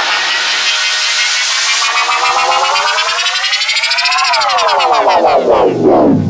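A buzzy synthesizer tone in a breakcore track, gliding slowly upward in pitch for about four seconds and then sweeping steeply back down, siren-like, with the drums dropped out.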